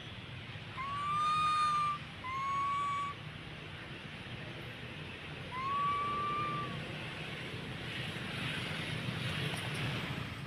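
Baby macaque giving three clear, whistle-like coo calls, each about a second long, rising slightly at the start and then held level; two come close together early on and a third a few seconds later. A steady low hum runs underneath.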